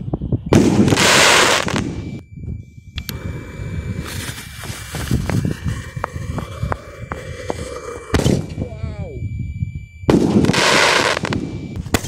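Komet "Thunder" firework tube going off: a loud hissing rush of sparks, then several seconds of crackling with sharp pops and a thin steady whistle. A sharp crack comes about eight seconds in and another loud rush about ten seconds in as it sends its shots up.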